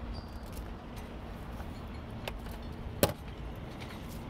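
Hands working tape around a clear plastic hose: a few small clicks and one sharp click about three seconds in, over a steady low rumble with a faint steady hum.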